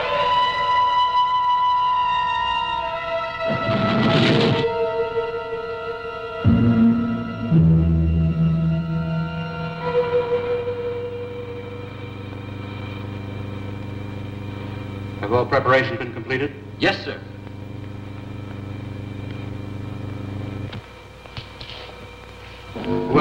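Film score of long held tones with a brief noisy swell about four seconds in. From about seven seconds a low steady hum takes over, with a few short blips around sixteen seconds, and it stops shortly before the end.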